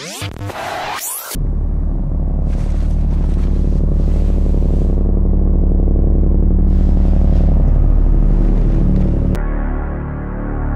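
Electronic music: sweeping pitch glides in the first second give way to a deep, sustained bass drone that swells steadily. Near the end the treble suddenly cuts off, leaving a muffled, filtered sound.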